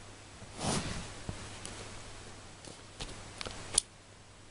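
Faint handling noise in a quiet room: a soft rustle just under a second in and a few small clicks, the sharpest near the end.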